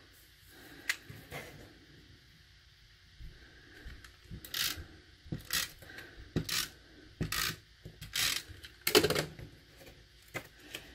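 Stampin' Up! Snail tape-runner adhesive being rolled along a cardstock strip in a series of short strokes, about one a second through the second half. A couple of light clicks come about a second in.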